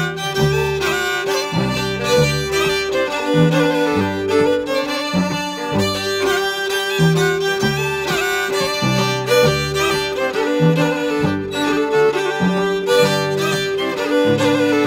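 Traditional Scandinavian folk tune played by a trio of bowed fiddles. A long-held upper note rings over a lower line that moves in short, rhythmic bowed notes.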